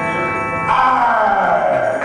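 Electric guitar through effects, played live: a held, echoing chord, then about two-thirds of a second in a loud sweep falling in pitch over about a second.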